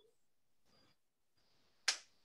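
Mostly quiet room, with one short, sharp tap near the end.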